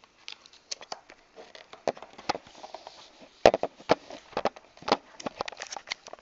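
Handling of a plastic VHS cassette and its worn cardboard sleeve: an irregular run of clicks, knocks and light rustling. The loudest knock comes about three and a half seconds in.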